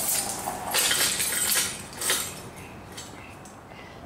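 Light metallic clinking and jingling, loudest in a cluster about a second in and again just after two seconds, then dying down.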